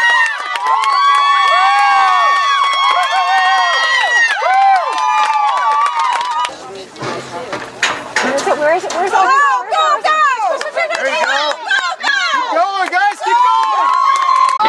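Small crowd of spectators yelling and cheering, several high voices holding long shouts over one another, with a brief dip about seven seconds in before the shouting picks up again.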